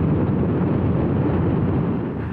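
Honda CRF1000L Africa Twin's parallel-twin engine running steadily as the motorcycle rides along, mixed with wind and road noise on the mounted microphone.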